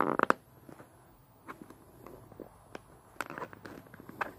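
Plastic action figure being handled on a clear plastic display base: a quick cluster of clicks and taps right at the start, then scattered fainter taps as its feet are set on the stand.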